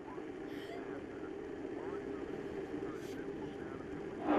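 A steady low drone, with faint muffled voices under it and two soft clicks, about half a second in and again about three seconds in.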